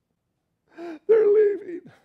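A man's voice: a short sharp intake of breath a little under a second in, then one drawn-out spoken word.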